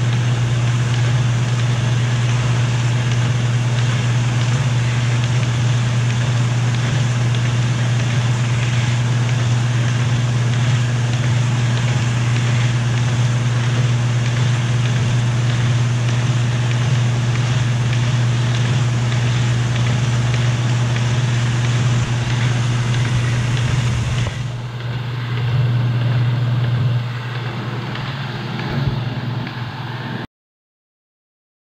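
Baum 714 vacuum-feed paper folder running: a steady low hum from its motor and air pump under a continuous rushing clatter of rollers and sheets feeding through the folds. About 24 seconds in, the high hiss drops away and the machine sounds quieter and more uneven.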